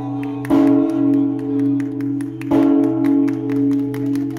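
Giant 3,700 kg temple bell struck twice by its rope-swung clapper, about two seconds apart. Each stroke rings on in a long, deep hum that carries into the next.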